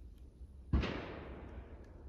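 A single gunshot about three-quarters of a second in, its echo dying away over about a second.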